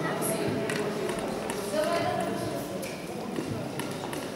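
Large indoor hall ambience: a faint murmur of voices with a few light knocks scattered through it.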